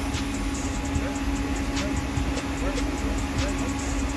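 A steady machine hum with a low rumble, constant throughout, with faint voices in the background.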